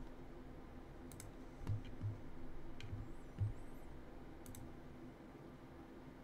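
Scattered sharp clicks and light knocks at a computer desk, a handful spread irregularly, over a steady low hum.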